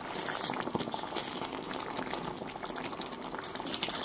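Thick pav bhaji vegetable gravy bubbling in a nonstick pan, with many small crackling pops, while a wooden spatula stirs and mashes it.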